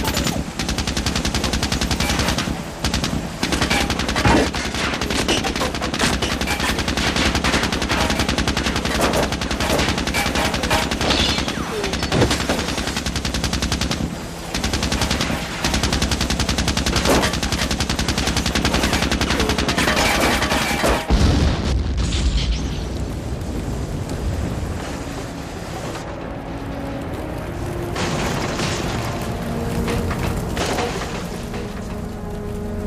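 Film sound effects: long, dense runs of automatic gunfire, then a heavy explosion with a deep boom about two-thirds of the way through, after which the firing stops and music with held notes comes in.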